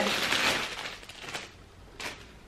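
Thin clear plastic packaging bag crinkling and rustling as hands rummage inside it. It fades out in the second half.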